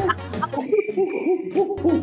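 Rapid monkey-style "ooh-ooh" hooting, about four short rising-and-falling hoots a second, over music. The music's bass drops out for about a second in the middle.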